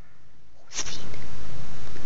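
Domestic cat purring close to the microphone while kneading a blanket: a steady low rumble that sets in suddenly under a second in, with a brief rustle at its start.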